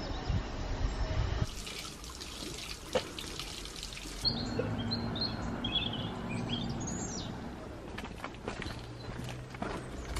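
Outdoor ambience with small birds chirping, short high calls repeated in the middle stretch. A steady hiss comes before them, and a few light clicks near the end.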